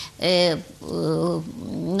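A woman's voice in mid-sentence: a short word, then a drawn-out hesitation sound held at a steady pitch for most of a second, before the talk carries on.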